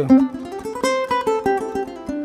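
Ukulele played fingerstyle: a quick run of single plucked notes picked with the alternating-thumb technique.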